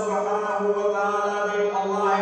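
A man's voice chanting in long, held, melodic notes that slide slowly from pitch to pitch.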